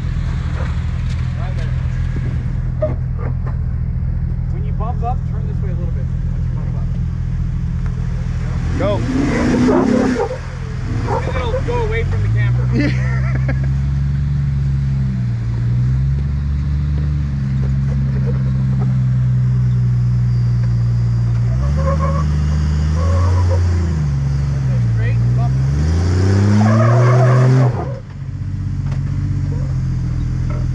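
Off-road Jeep engine running at a low, steady rumble while rock crawling, revving up and easing back several times as it works over the ledges, with a deep dip and climb in revs near the end.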